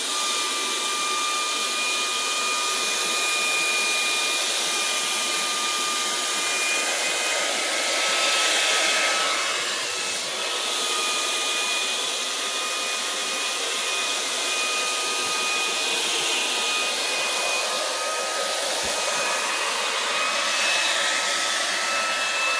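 Electric air blower running steadily: a rushing hiss with a constant whine, blowing poured acrylic paint across a canvas in a Dutch pour. The whine wavers and briefly drops out about ten seconds in.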